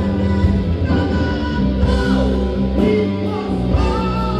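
Live rock band playing a song: two electric guitars, electric bass and drum kit.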